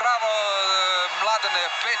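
A male football commentator's excited, drawn-out call that falls slowly in pitch for about a second, then quick speech, over the steady noise of a stadium crowd.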